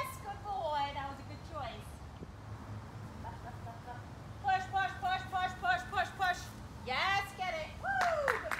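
A woman's excited, high-pitched voice praising a dog: short calls at first, then a quick run of about eight repeated syllables around the middle, and a rising-and-falling call near the end.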